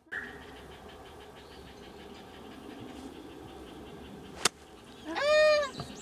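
A golf club striking a ball with one sharp crack about four and a half seconds in. Right after it comes a woman's loud, high, drawn-out exclamation.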